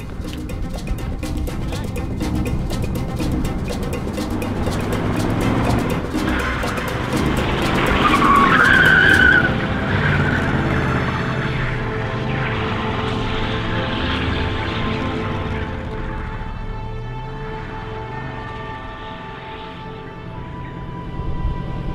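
A car engine revving with tyres skidding and squealing as the car spins donuts on asphalt. The squeal is loudest about eight to nine seconds in. Music plays along.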